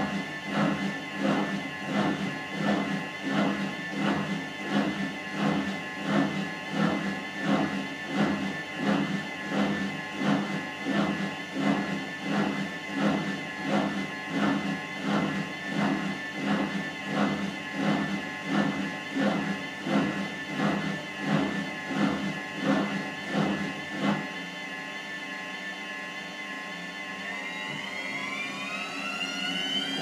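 Gorenje WaveActive washing machine in its manual test cycle: the drum tumbles the wet test cloth with an even rhythmic pulse, about three beats every two seconds, over a steady motor hum. About 24 seconds in the tumbling stops, leaving the hum. A few seconds later the motor's whine starts rising steadily as the drum speeds up.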